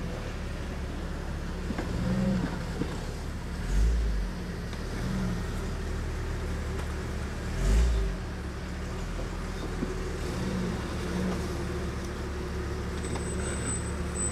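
Jeep Cherokee XJ's engine running at low revs as the 4x4 crawls up a rutted dirt gully, steady throughout, with two short low thumps about four and eight seconds in.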